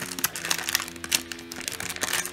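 Clear plastic wrapping crinkling and crackling in a run of quick, irregular rustles as a 9x9 puzzle cube is pulled out of it. Background music with held low notes plays underneath.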